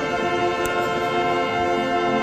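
Agrupación musical (cornet and brass band) holding a long, steady chord in a processional march.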